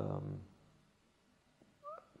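A man's speaking voice trails off in the first half second, then a pause of near silence. Just before the end comes a single very short, rising squeak.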